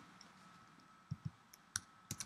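Faint computer clicks from a mouse and keyboard: a quick pair of clicks a little past halfway, then one sharper click near the end, as text in the script is selected to be copied.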